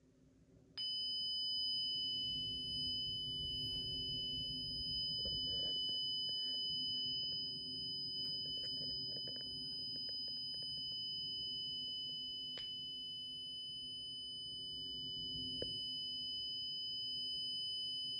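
Honeywell Lyric alarm panel's built-in sounder giving a steady, unbroken high-pitched alarm tone that starts about a second in. The panel is in alarm on its front-door zone.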